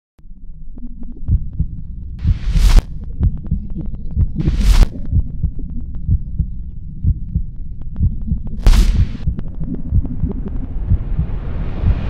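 Heartbeat sound effect: fast, uneven low thumps, broken three times by a short hissing swell that cuts off sharply. Over the last couple of seconds a hiss builds and rises in pitch.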